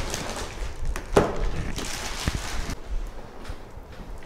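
Thin plastic carrier bag rustling and crinkling as a boxed figure is pulled out of it, with a few sharp crackles, the loudest about a second in.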